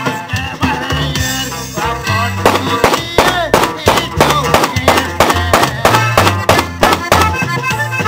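Dance band music with a steady beat on drums over a bass line.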